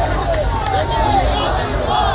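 A crowd of protesters shouting slogans together in loud, rising and falling voices, with a few sharp, evenly spaced strikes in time with the chant.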